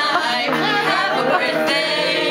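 Several voices singing a song together, with an electronic keyboard playing along.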